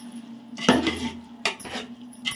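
Perforated metal skimmer ladle knocking and scraping against the side and bottom of a large aluminium pot while stirring chicken in thick masala with mint leaves. Several sharp clanks, the loudest about two-thirds of a second in, over a faint steady low hum.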